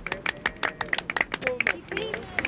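A small group of people clapping by hand, individual claps quick and uneven.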